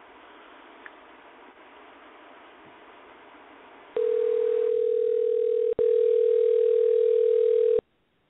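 Telephone line tone on an outgoing call: faint line hiss, then about halfway through a steady single-pitched phone tone that runs for about four seconds, drops out for an instant partway, and cuts off abruptly near the end.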